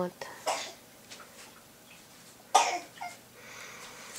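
A few short, breathy bursts from a woman, the loudest about two and a half seconds in, just before a short spoken word.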